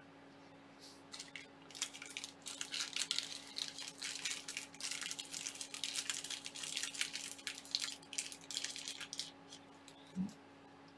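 Plastic parts packaging crinkling and rustling in the hands: irregular crackling starting about a second in and running until near the end.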